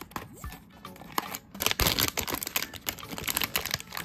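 Cardboard blind box being opened and its packaging handled: a run of sharp clicks and crinkling rustles, densest in the second half, over background music.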